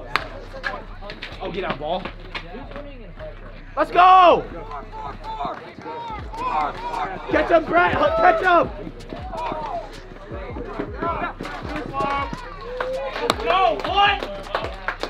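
A bat strikes a pitched baseball with a sharp crack at the very start, followed by spectators and teammates shouting and cheering the hit, with one loud yell about four seconds in.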